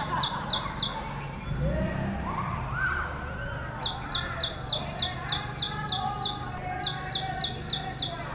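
Ashy prinia singing its repetitive song: a run of identical high notes, about four a second. One run ends in the first second, a longer one runs from about four to six seconds in, and another starts near the end.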